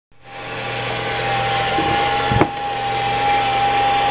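Robot vacuum cleaner running: a steady high whine over a low motor hum, rising quickly at the start, with a single knock about two and a half seconds in.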